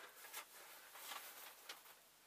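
Faint rustling of sewing wadding being handled, with three soft rustles about a second apart.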